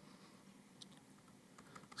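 Near silence: faint room hum with a couple of faint clicks from a laptop keyboard, one about a second in and one near the end.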